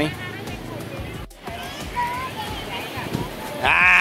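Small waves washing over wet sand under a murmur of distant beach voices, with a brief dropout about a second in. Near the end a loud, high-pitched shout of 'aai' breaks in.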